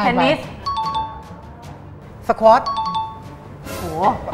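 A two-note ding-dong chime sound effect, a higher note then a lower one, heard twice about two seconds apart, each right after a one-word spoken answer. A short whooshing burst of noise comes just before the end.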